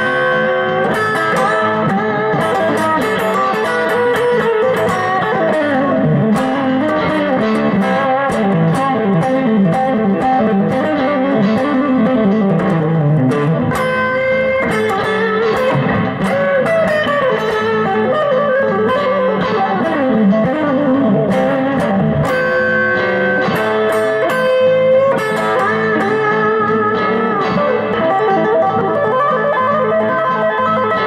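Electric guitar, a Fender Stratocaster with its mid-boost circuit switched on, played through an amplifier: continuous single-note lead lines with frequent string bends.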